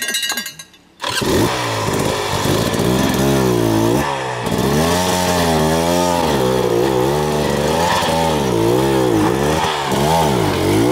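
Enduro motorcycle engine, starting about a second in and revved up and down over and over as the bike is worked up a steep rocky, muddy climb. Its pitch rises and falls roughly once or twice a second.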